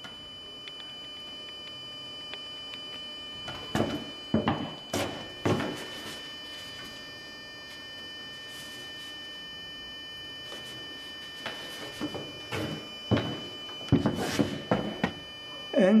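Knocks and thuds of an umbrella's frame and canopy being handled and pushed back into shape, in two short clusters a few seconds in and again near the end. Under them runs a steady hum with several high whining tones.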